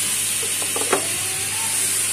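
Onion and spice masala sizzling in a frying pan with a little water added, and a wooden spatula scraping the pan a few times about a second in.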